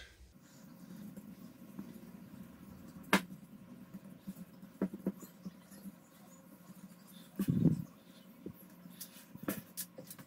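Faint handling sounds of hands pressing and patting sticky dough out in a non-stick frying pan, with a few small clicks and a soft low thump near the middle.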